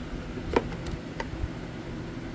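Light handling clicks as speaker wire and fingers knock against a plastic box: two short ticks, about half a second and a second and a quarter in, over a steady low hum.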